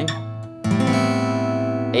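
Acoustic guitar: a chord fades, then a D add9 chord, with the open high E string as its added ninth, is strummed once about two thirds of a second in and left ringing.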